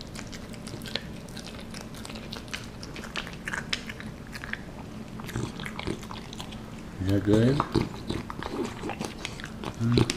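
A French bulldog chewing and licking food off a plate and the floor: many quick wet smacks and clicks. About seven seconds in, a short, louder low voice-like sound cuts in, with another brief one near the end.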